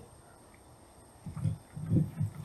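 Short, low, wordless vocal sounds from a person, like murmured 'mm's, come in a few quick pulses about a second and a half in, after a moment of near quiet.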